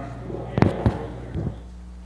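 Two sharp thumps about a third of a second apart, then a softer one, over a steady low electrical hum.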